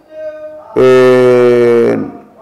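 A man's voice holding one long, steady vowel at an even pitch, like a drawn-out chanted note, that dips slightly before it fades; a softer hum comes just before it.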